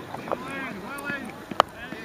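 Voices of players and onlookers calling out on an open football pitch, with a sharp knock about one and a half seconds in.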